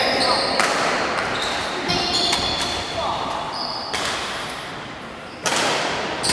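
Badminton rally in an echoing sports hall: a few sharp racket hits on the shuttlecock, the loudest just before the end, with short squeaks of shoes on the court floor and voices murmuring in the background.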